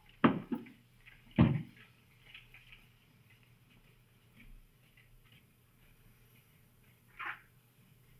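Two loud, dull thumps about a second apart near the start, then a quiet room with faint shuffling and a short, sharper clack near the end.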